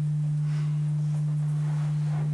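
A loud, steady low hum, one pure unchanging tone, typical of electrical hum in the recording. Faint grand-piano playing lies beneath it.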